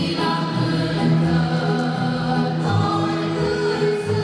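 Choral music: a choir singing long held notes in harmony, over a low pulse that recurs about twice a second.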